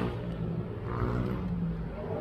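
A motor vehicle engine running steadily nearby, with faint voices about a second in.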